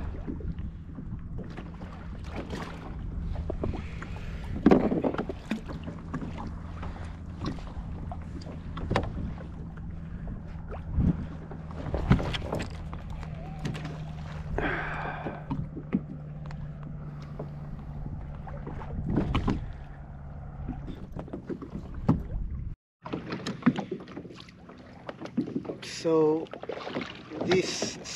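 Gear being handled on a plastic fishing kayak at anchor: scattered knocks and clicks over a steady low hum, with a cast of the baited rig about a third of the way through.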